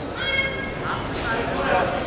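Coaches and spectators shouting across a gymnasium during a wrestling bout, with a high-pitched yell near the start.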